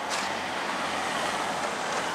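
Road traffic noise: a steady rush of a passing vehicle's tyres and engine. It gets slightly louder just after the start and then holds.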